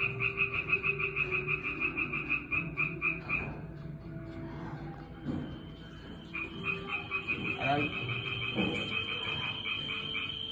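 A frog calling in two runs of rapid, evenly spaced pulses, about seven a second. The first run stops about three and a half seconds in; the second starts about six and a half seconds in and carries on to the end. A low hum runs underneath.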